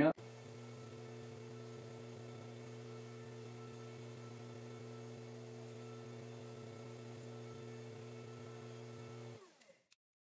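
Belt grinder running unloaded with a 220-grit belt fitted: a steady motor hum with no grinding contact yet. It cuts off abruptly near the end.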